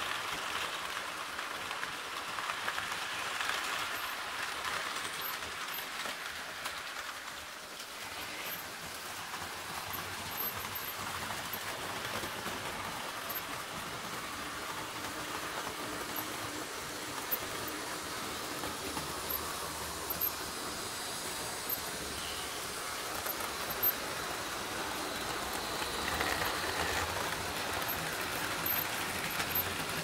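HO-scale model trains running on a Märklin digital layout: a steady rolling rush of small wheels on metal track and locomotive motors, with a few sharp little clicks.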